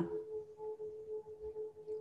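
A faint, steady mid-pitched tone that pulses gently, heard over quiet background noise in a pause between speech.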